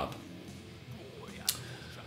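Low room tone broken by a single sharp click about one and a half seconds in.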